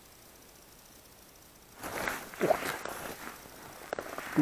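Quiet at first, then about two seconds in a burst of rustling and handling noise from the angler's jacket and small ice-fishing rod as he strikes a bite at the hole.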